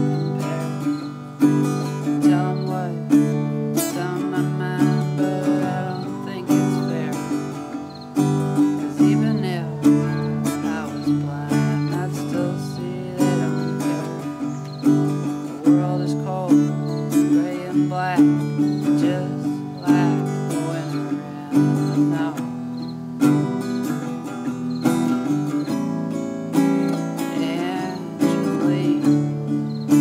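Solo acoustic guitar played in a steady rhythm, picked and strummed chords with a sharp accent about once a second.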